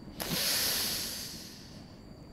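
A person's long breathy exhale into the microphone, a hiss that starts suddenly and fades away over about a second and a half.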